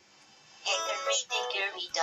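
A synthesized, computer-generated voice singing in short choppy phrases, starting about two-thirds of a second in after a brief lull.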